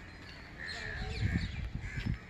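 Several short bird calls, a few within two seconds, over a low rumble that grows louder in the second second.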